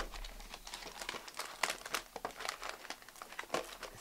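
Foil trading-card pack wrappers crinkling as they are handled and drawn out of a cardboard box: a quiet, irregular run of small crackles.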